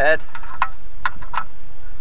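Hand ratchet clicking in short, irregular strokes as it turns the oil-pan drain plug back in by hand.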